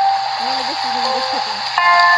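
Heavy rain falling as a steady hiss, with a quiet voice murmuring low underneath. Sustained musical notes come in near the end.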